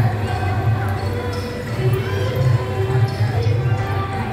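Drumbeats thudding unevenly, with a crowd's voices and held musical tones above them.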